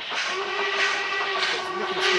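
Steam locomotive whistle from an LMS Stanier 8F 2-8-0 sounding out of sight, one steady note held about a second and a half, starting about half a second in.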